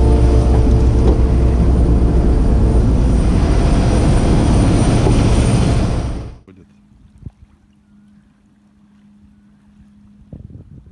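Airliner engine noise at the open cabin door and boarding stairs: a loud steady roar with a high thin whine, cutting off suddenly about six seconds in. A faint low hum follows.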